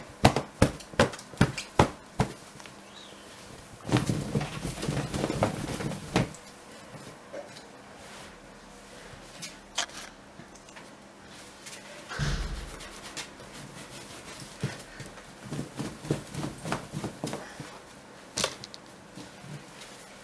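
Faux-fur rug being shaken out hard by hand to loosen crumbs: a quick series of sharp flapping snaps at first, then a stretch of rustling, a low thud about twelve seconds in, and more snaps near the end.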